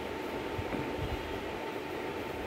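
Steady background noise: a low rumble with a hiss over it and a faint, steady high tone.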